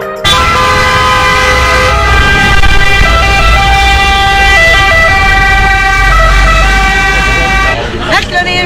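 Several car horns held at once in busy street traffic. Steady tones sound together over the low rumble of engines, starting abruptly and stopping near the end.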